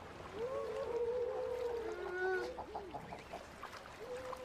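Baikal seals calling: a long, wavering call of a second or two, overlapped by a second, lower call around the middle, with a few short clicks a little after the middle.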